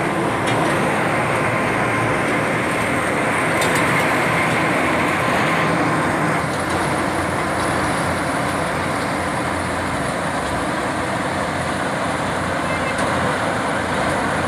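Hot-mix bitumen (asphalt) plant running: a steady, even machinery noise from its diesel-fired burner and blower and its conveyors.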